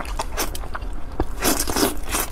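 Close-miked biting and chewing of braised pig's trotter: a run of short sticky clicks and pops, with a louder, denser stretch in the second half.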